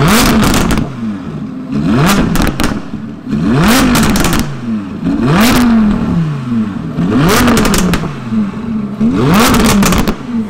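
Audi R8's V10 engine being revved hard at a standstill: about six quick blips, each rising sharply and falling back, with sharp pops from the exhaust around each rev.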